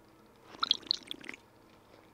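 A drink being sipped through a straw from a plastic cup: one short slurp, starting about half a second in and lasting under a second.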